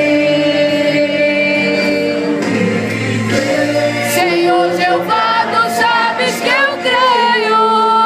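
Church choir singing a gospel song, voices holding long notes, with a new phrase starting about two and a half seconds in and a wavering held note near the end.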